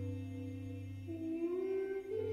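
Bass clarinet and voices holding sustained notes over a low drone in a piece of contemporary music. About a second in, a new held note enters and bends slightly upward, and the lowest drone drops away.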